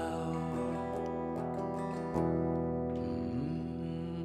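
Electric guitar strumming a few chords, each left to ring out between strums.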